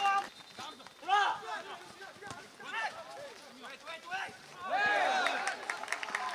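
Shouted calls from players and coaches across an outdoor football pitch: several separate shouts, the loudest and longest about five seconds in, over a steady low background of outdoor noise.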